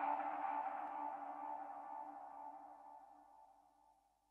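Electronic house track ending on a held synth chord that fades out steadily and dies away at the very end.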